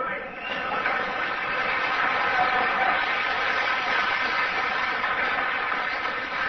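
Audience applauding steadily after a line in the speech, heard through an old, hissy recording.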